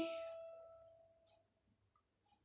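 A single E note on an electronic keyboard ringing on and fading away over about the first second, followed by near silence.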